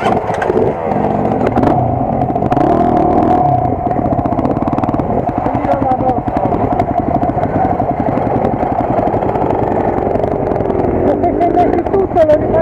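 Dirt bike engines running at low speed on a rough trail, with a steady engine beat through the middle of the stretch.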